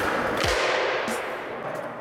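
Skateboard wheels rolling on a concrete floor, with one sharp thud about half a second in as the board comes down from a flip trick; the rolling then fades.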